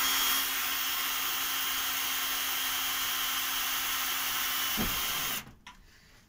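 Ryobi cordless drill running at a steady speed with a constant motor whine, its bit cutting a small hole through a thin metal part. It stops about five and a half seconds in, once the bit is through.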